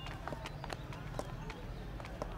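Footsteps tapping on a paved road, a few light steps a second, over a low steady background hum.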